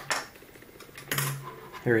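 Small hard parts being handled on a tabletop: the aluminium brushless gimbal and its 3D-printed plastic top plate knock once at the start and clatter briefly about a second in.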